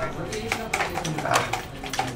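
Computer keyboards and mice clicking under faint voices in a small room.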